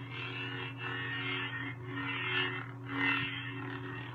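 Lightsaber sound from a Verso smoothswing soundboard played through the hilt's speaker: a steady electric hum with swing whooshes that swell and fade several times as the hilt is swung.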